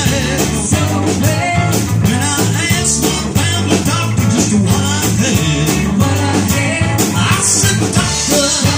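A live rock band playing amplified through a small PA: electric guitars, bass guitar and drum kit, with a woman singing lead.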